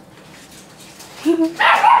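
A woman's short, high-pitched laugh with a breathy burst, starting a little over a second in after a quiet stretch.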